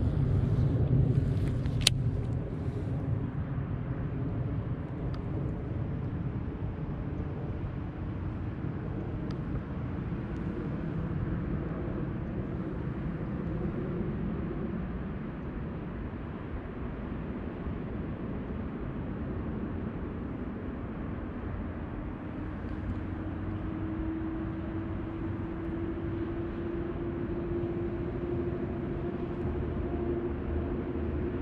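Steady low outdoor rumble, with a single sharp click about two seconds in. A faint droning tone enters in the last third and slowly rises in pitch.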